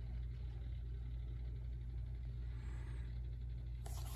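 Steady low background hum with faint room hiss, unchanging throughout. A brief handling sound comes just before the end.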